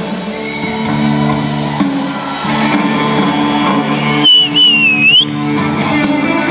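Live rock band playing in a large arena, with sustained electric guitar and chords. About four seconds in, a loud, wavering high whistle from someone close to the microphone cuts over the music for about a second.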